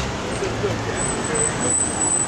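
City street traffic: engines of vehicles moving at low speed, with a box truck and a taxi passing close by, and voices faintly underneath. A thin high whine comes in about halfway through.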